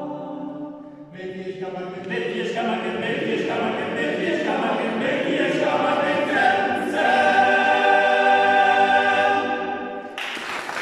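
Small a cappella choir singing in a reverberant stone church: after a brief break about a second in, a new phrase grows louder and ends on a long held chord that stops near the end.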